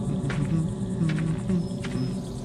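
Insects chirping in a fast, even pulse, with short repeated chirps, over a low, sustained musical score.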